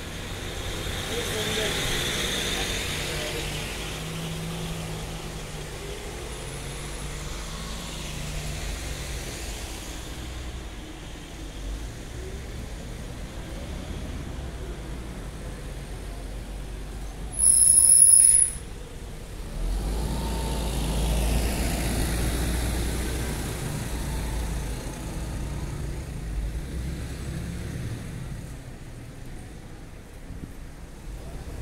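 Town-centre street traffic: vehicles running past, with a loud high-pitched hiss lasting about a second some seventeen seconds in, then a vehicle engine's low rumble swelling and fading.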